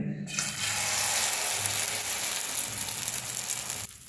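Beaten egg mixed with chopped onion and green chilli poured into hot oil in a non-stick pan, sizzling steadily as it fries. The sizzle starts a moment after the pour begins and cuts off just before the end.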